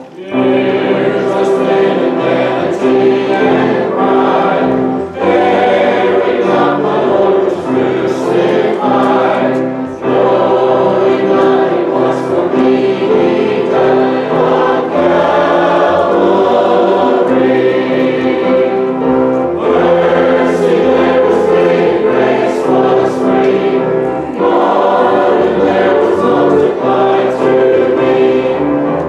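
Church congregation singing a hymn together, in sung phrases with short breaks between them.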